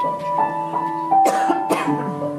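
Grand piano playing a slow intro of broken chords, a new note roughly every third of a second. About halfway through come two short, loud coughs, half a second apart.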